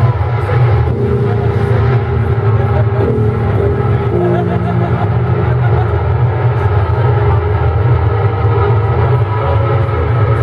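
Sludge metal band playing live, loud: heavily distorted guitars and bass holding slow, sustained low chords in a dense, steady wall of sound.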